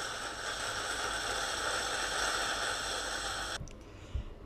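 A recording of rain played back from a WAV file: an even hiss of rainfall that cuts off suddenly near the end.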